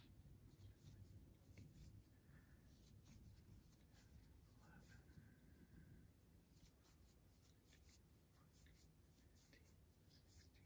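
Near silence, with faint soft rubbing and small ticks of acrylic worsted yarn drawn through loops on a metal crochet hook while a foundation chain is being worked.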